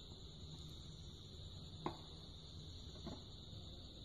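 Two faint, light clicks a little over a second apart, from the plastic cup and breeding box being handled, over a faint steady hum.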